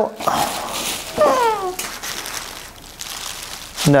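Plastic and foam packaging wrapping rustling and crinkling as a large print is worked out of it. About a second in there is a short falling whine-like vocal sound.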